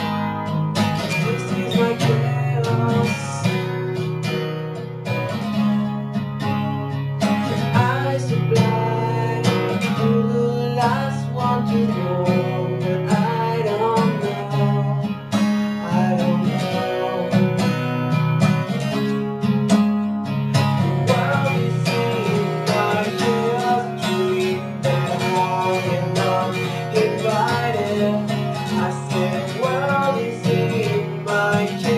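Acoustic guitar strummed in a steady rhythm, playing the chords of a song.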